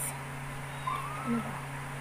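A cat meowing faintly once, a thin call that rises then falls about a second in, over a steady low hum.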